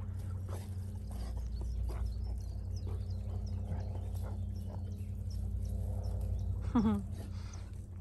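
Dalmatians playing in long grass: faint scuffles and soft dog sounds over a steady low hum. A short laugh comes near the end.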